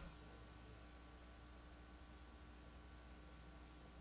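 Near silence: faint steady room tone with a thin electrical hum.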